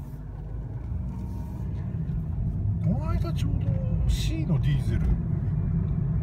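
Mazda Demio XD's 1.5-litre turbo-diesel and road noise heard from inside the cabin: a low rumble that grows louder over the first few seconds as the car pulls away and gathers speed.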